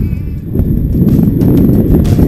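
Wind buffeting the microphone of a camera riding on a moving road bike. It is a loud, rough, low rumble that swells about half a second in.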